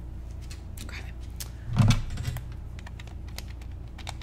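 Light plastic clicks from a corded telephone handset being handled and its buttons pressed, with one louder, heavier thump about two seconds in.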